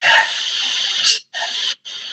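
A person's breathy, hiss-like vocal sounds: one stretch of about a second, then two short bursts after brief gaps.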